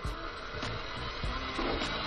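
Electric stand mixer running, its wire whisk beating egg yolks with sugar in a steel bowl, with a steady motor and whisking noise.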